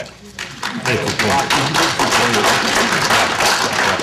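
Audience applauding, starting about half a second in and going on steadily, with a few voices mixed in.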